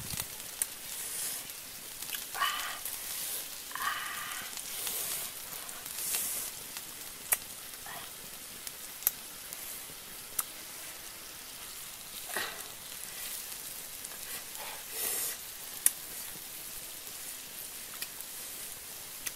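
Squid sizzling on a fire-heated flat stone, a steady hiss broken by sharp pops every few seconds as juices spit or the wood fire crackles.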